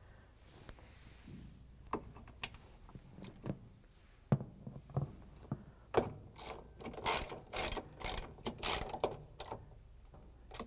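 Hand ratchet with a 3/8-inch socket and extension clicking as it drives in the bottom bolt of a washer's plastic motor and pulley cover. A few scattered light clicks come first, then a run of quick ratcheting strokes, about two a second, from about halfway through.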